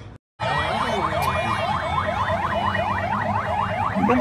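Electronic siren in a fast yelp: a rising sweep repeated about four times a second, starting after a brief dropout, over a low rumble.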